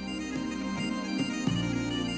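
Background bagpipe music: a melody played over a steady drone.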